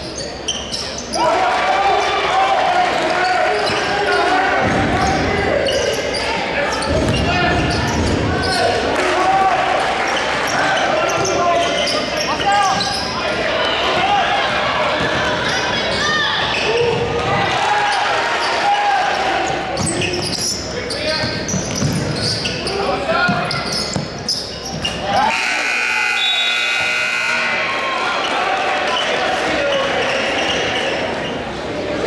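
Live high-school basketball game sounds in a gym: a ball dribbling on the hardwood court, with shouting and talk from players and spectators throughout. Near the end, a horn-like tone sounds steadily for about two seconds.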